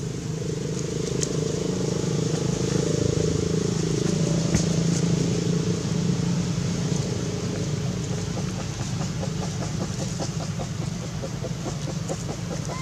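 A motor engine drones steadily, growing louder a few seconds in and then easing off.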